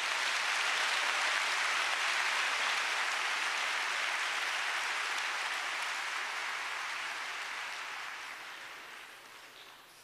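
Large congregation applauding: a steady wash of clapping that comes in at full strength and then fades away over the last few seconds.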